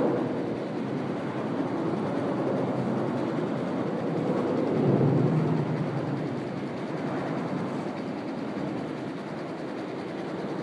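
Steady rumble of passing vehicles, swelling about five seconds in.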